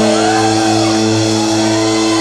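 Rock band's electric guitar and bass holding a sustained, ringing chord through a PA, with no drum hits.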